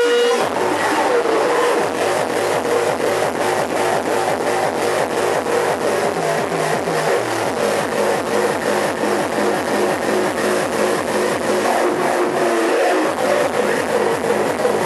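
Hard techno (schranz) played loud over a club sound system, the recording distorted, with a fast, driving four-on-the-floor kick drum. The kick and bass drop back in about half a second in, after a short break.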